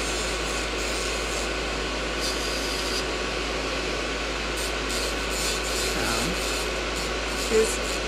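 Gel-coated fingernails being filed: a steady rasping rub, with the even hum of a motor under it.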